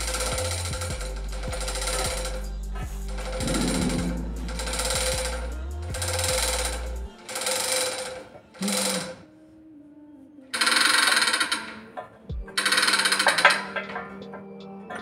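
Bursts of rapid metallic ratcheting clatter, about nine strokes of roughly a second each with a short pause near the middle, from a hand-worked ratchet used in fitting a flour-mill electric motor onto its mount.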